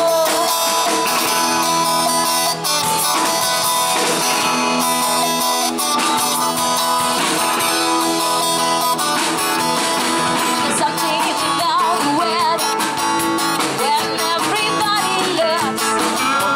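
Live band music: guitars strummed and plucked over bass guitar and a drum kit, with a steady beat.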